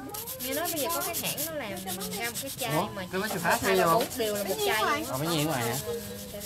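Hand nail file rasping over a dip-powder nail in quick, even back-and-forth strokes.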